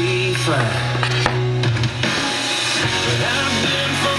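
Country music playing on an FM radio broadcast.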